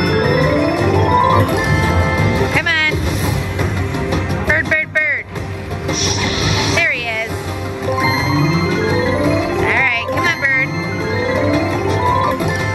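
Bao Zhu Zhao Fu video slot machine playing its bonus-round music and sound effects: quick rising runs of chime-like notes as values land and are tallied, with several swooping effects in between during a respin.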